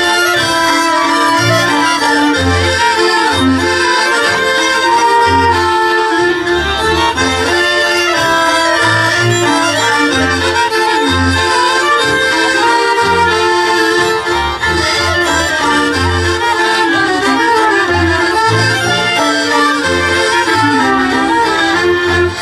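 Traditional Polish folk band playing an instrumental tune: accordion to the fore with fiddles carrying the melody, over a double bass marking the beat with steady, evenly repeating bass notes.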